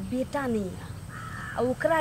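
A crow cawing once, a harsh call about a second in.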